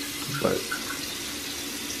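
Steady hiss of running water.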